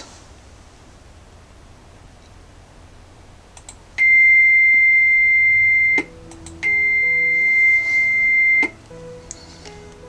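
Computer-generated steady tone at C7, about 2,090 Hz, the highest note of a flute, sounded twice for about two seconds each with a short gap between. A few soft clicks come just before and around the tones.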